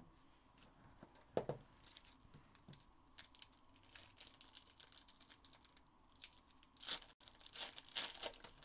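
Foil wrapper of a trading card pack being torn open and crinkled by hand, faint at first and loudest in two bursts near the end. A short soft thump comes about a second and a half in.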